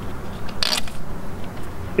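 A short ratcheting rasp, about half a second in and lasting about a quarter of a second, over a steady low rumble: the rubber ratchet strap on a Yakima Hangover 6 bike rack's lower wheel cradle being cinched through its buckle.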